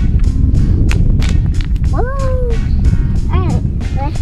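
Steady low rumble of wind buffeting the microphone, with two short high vocal calls from a child, about halfway through and again shortly after.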